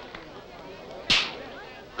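A single sharp crack about a second in, over faint background voices.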